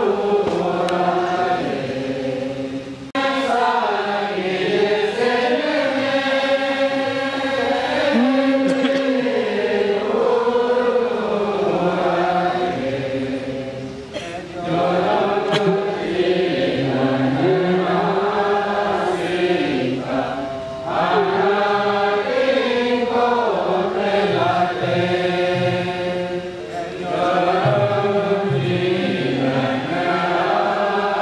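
Voices singing a slow, chanted hymn melody in long phrases, with short pauses between them.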